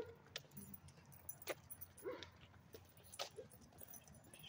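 Faint, scattered clicks and light metallic jingling.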